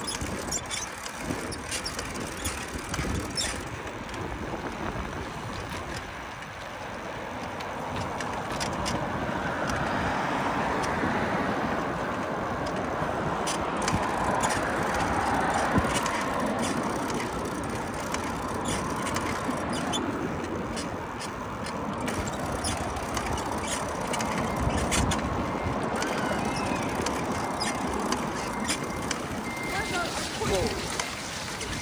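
Road traffic going by on the street alongside, louder through the middle as vehicles pass, mixed with occasional rattles and clicks from the bicycle riding along the sidewalk.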